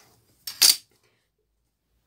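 A plastic ruler put down on a wooden table: a light scrape and then one short, bright clack about half a second in.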